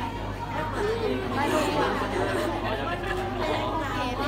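Several people talking at once, overlapping chatter of voices in a room, over a steady low hum.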